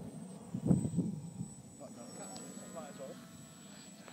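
Brief muffled voice about a second in, then the faint whine of a radio-controlled flying wing's electric motor and propeller as it flies past.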